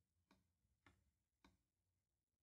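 Near silence: room tone, with three very faint ticks about half a second apart.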